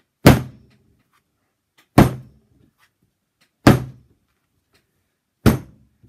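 A lump of porcelain clay slammed down hard onto a canvas-covered table four times, a little under two seconds apart, each a heavy thud. The pounding loosens up clay that has sat for months.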